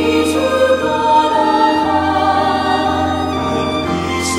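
Mixed SATB choir singing a choral anthem with piano accompaniment.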